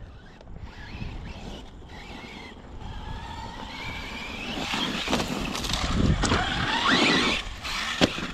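Traxxas Sledge RC monster truck's brushless electric motor whining, rising in pitch as it speeds up and getting louder, over a rough noise of tyres on dirt and gravel. A few sharp knocks come about two thirds of the way through.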